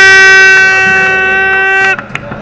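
A single loud horn blast, one steady pitch held for about two seconds, then cut off suddenly.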